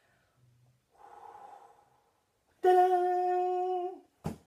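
A woman's voice: a soft breathy sound about a second in, then a single steady vocal note held at one pitch for about a second and a half, stopping at the very end.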